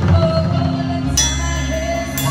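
Drum kit played along with band music, with sustained bass and melody notes and a cymbal crash a little past one second in.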